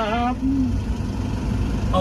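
Mitsubishi pickup's engine idling, a low steady rumble heard from inside the cab, with a short spoken word at the start.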